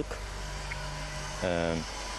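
A pause in a man's talk over a steady low hum, broken by one short voiced sound with falling pitch about a second and a half in.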